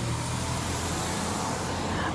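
Steady outdoor street noise with a low, even engine-like hum from road traffic.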